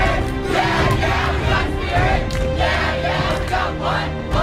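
A group of young people shouting and cheering together over background music.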